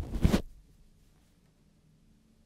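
Handling noise from a handheld microphone: a sharp knock, then about half a second of scraping and rustling as the mic is moved or set down.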